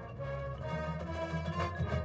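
High school marching band playing held chords, with low brass underneath and higher instruments sounding over it.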